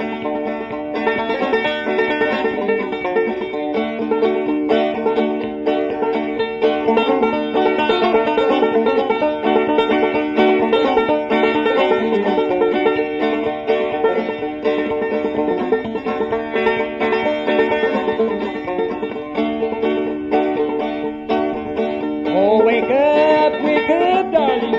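Acoustic bluegrass string band playing an instrumental break between sung verses, a banjo picking rapid notes over guitar and other strings.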